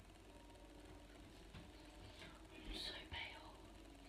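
Near silence: room tone, with a few quiet, half-whispered words about three seconds in.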